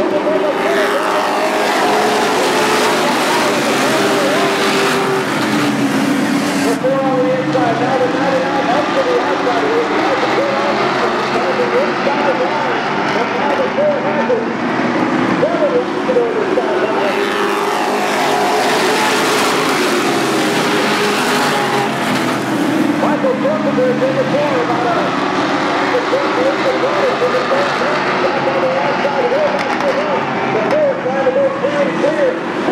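A pack of race trucks running laps on a short oval, many engines overlapping at once. Their pitch rises and falls as the trucks sweep through the turns and down the straights, in two fuller swells as the pack goes by.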